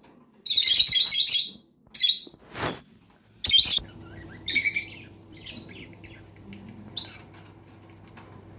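Small birds chirping in quick high bursts, busy in the first four seconds and sparser after, over a faint steady low hum that comes in about halfway through.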